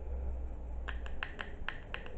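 Plastic measuring spoon clicking against a small jar while scooping gel, about six quick clicks in the second half, over a low steady hum.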